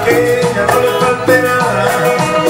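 Live Latin dance band playing on stage through a PA, with a steady percussion beat under sustained keyboard and horn-like melody lines.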